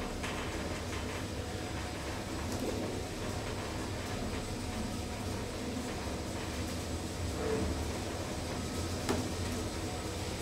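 1981 KONE elevator car travelling in its shaft: a steady low hum of the running drive, with a few faint clicks and rattles from the car, one shortly after the start and one near the end.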